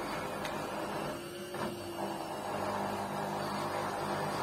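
LG Intellowasher 5 kg front-loading washing machine running its wash cycle, the drum motor humming as it tumbles sudsy laundry in water. About a second in, the drum sound drops away briefly with a short whine, then picks up again as the drum turns once more.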